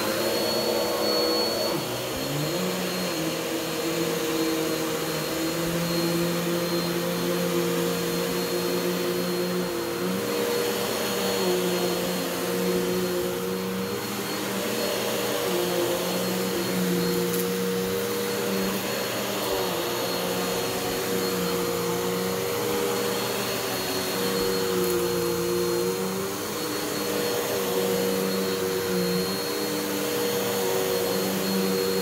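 Bissell CleanView OnePass 9595A multi-cyclonic upright vacuum running on carpet, with a steady motor whine. Its lower hum shifts up and down every few seconds as it is pushed back and forth, and it settles to speed in the first couple of seconds.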